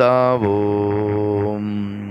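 A singing voice drops in pitch, then holds one long, steady low note that slowly fades, as in a chanted rhyme.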